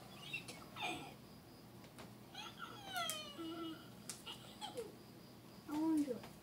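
A house cat meowing in several short falling calls, the longest about two and a half seconds in, with light clicks of trading cards being handled.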